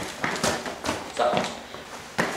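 Quick footsteps and scuffling on a hard floor, with short wordless vocal sounds mixed in.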